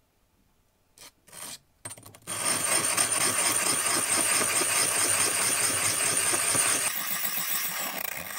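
A glass tumbler knocked down onto wet sandpaper a couple of times, then rubbed hard across the abrasive: a loud, continuous gritty scraping that starts about two seconds in and eases slightly near the end.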